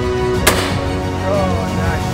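Background music with steady sustained tones, broken about half a second in by a single shotgun shot at a flying game bird.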